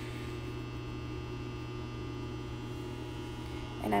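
A steady low electrical hum with a faint hiss, unchanging throughout.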